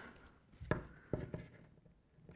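Scissors cutting into a paper sleeve pattern: a few short, quiet snips.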